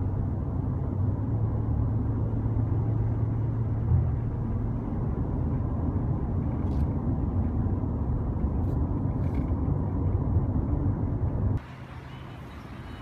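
Steady low rumble of a car driving on a highway, heard from inside the cabin: tyre and road noise with a low engine hum. It drops away suddenly near the end, leaving a quieter hiss, and a few faint ticks come in the second half.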